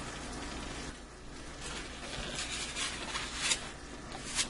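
Quiet kitchen room tone with a few soft clicks and taps, the clearest near the end, as a plate of food is set down on the countertop.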